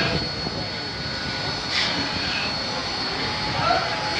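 Forced-air burners under large milk-boiling pans, running with a steady rushing noise and a thin steady high whine. Brief scrapes come twice, about two seconds in and near the end.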